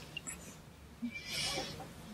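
A quiet pause in conversation, with one soft, breathy hiss lasting under a second about a second in, like a speaker's in-breath before going on.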